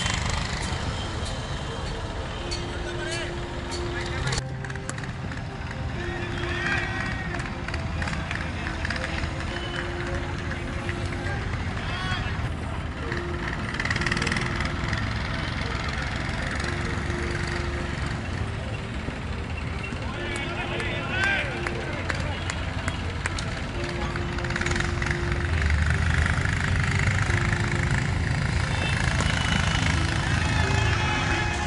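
Outdoor ambience at a cricket ground: indistinct distant voices of players and onlookers over a steady background noise, with a low steady hum that comes and goes.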